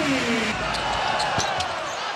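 Basketball arena ambience: a steady crowd hubbub with a few sharp knocks from the court.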